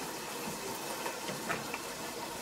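Faint sounds of a spatula stirring thick, melted cheese dip in a slow-cooker crock, with a short soft scrape about one and a half seconds in.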